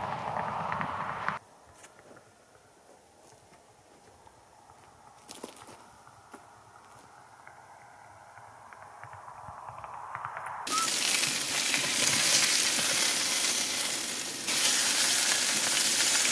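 Burgers sizzling in a frying pan on a camp stove: a loud, even sizzle that starts suddenly about two-thirds of the way in and grows louder a few seconds later. Before it there is a short stretch of outdoor noise, then near quiet with a few faint clicks.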